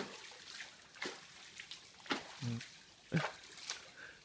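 Shallow, low-running creek water trickling, with a few light splashes. A short vocal sound comes near the end.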